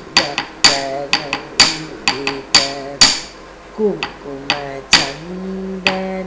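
Wooden stick beaten on a wooden block (the Bharatanatyam thattukazhi and thattu palagai) keeping the tala, sharp strikes about two to three a second, under a voice singing a Carnatic kirtanam melody that holds a long note near the end.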